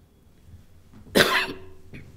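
One short cough a little over a second in.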